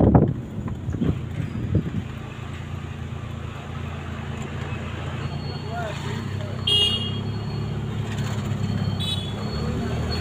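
A vehicle's engine running steadily while driving, heard from on board, with wind buffeting the microphone at the start. Two short horn toots sound, one about two-thirds of the way in and one near the end.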